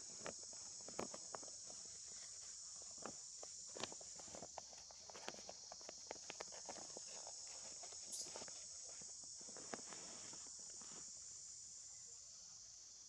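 A steady high-pitched insect drone, with faint irregular clicks and rustles from long-tailed macaques moving and grooming on a tree branch.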